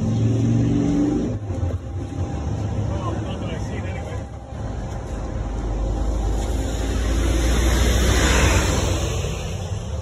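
Street traffic with a motor vehicle passing close by; its rumble builds to the loudest point about eight seconds in, then fades.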